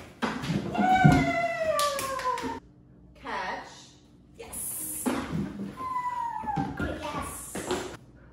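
A border collie whining in excitement: two long drawn-out calls that slide down in pitch, the first about a second in and a second one just after the middle.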